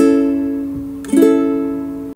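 Ukulele strumming two chords about a second apart, each left to ring and fade: the closing chords of the song.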